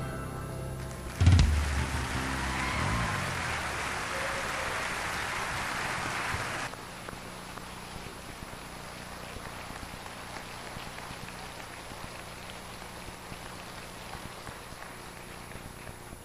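Audience applauding for about five seconds after the song ends, starting with a loud thump about a second in, then cutting off suddenly and leaving only low room noise.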